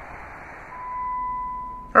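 A single steady electronic beep-like tone held for about a second, swelling in and fading, over faint background hiss.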